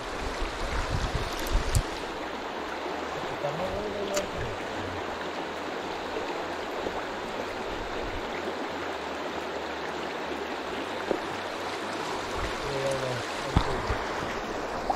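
Shallow river running over a stony bed: a steady rush of water.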